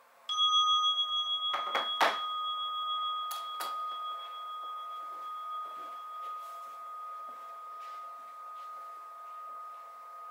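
A bell struck once, ringing clear and high and fading slowly. A few sharp knocks sound in the first few seconds.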